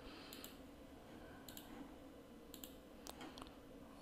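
Near silence, room tone with a few faint computer mouse clicks spaced through it.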